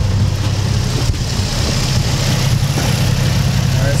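Nissan 350Z's VQ35DE V6 engine idling steadily at an even pitch.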